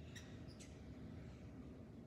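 Near silence: steady low room hum, with two or three faint, brief high-pitched ticks or squeaks in the first second.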